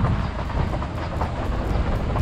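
A car driving on a rough, broken mountain road: a low rumble of tyres and road noise with irregular knocks and jolts from the suspension.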